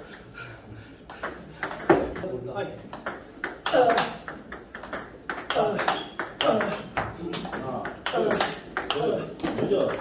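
Celluloid-type plastic table tennis balls clicking off rubber paddles and bouncing on the table in a fast run during a multiball forehand drive drill, starting in earnest about two seconds in. Short shouts are mixed in with the strokes.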